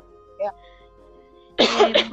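A woman's brief cough, loud and short, near the end.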